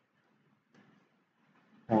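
Near silence: faint room tone, until a man starts speaking right at the end.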